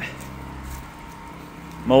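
A steady low hum of background noise in a pause between words, with a man's voice starting again near the end.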